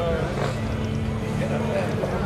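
Laughter and people talking over a steady low hum.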